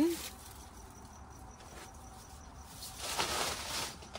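Artificial pine garland rustling against the plastic storage bin and bags as it is lifted out, loudest about three seconds in. A faint, rapid high ticking repeats evenly through the quieter first part.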